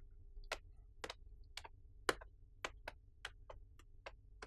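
Faint footsteps of shoes on a hard floor: sharp, unevenly spaced taps, about two to three a second.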